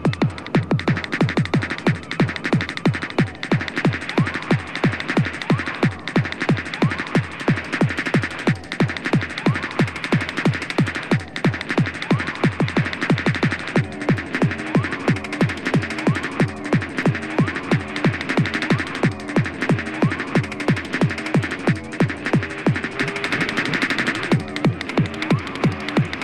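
Fast free-party tekno from a DJ mixtape: a hard kick drum beating about three times a second under a constant electronic wash. About halfway through, a stuttering synth riff comes in over the beat.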